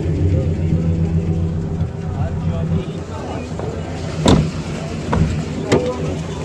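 A car engine idling with a steady low hum, with two sharp knocks about four and nearly six seconds in.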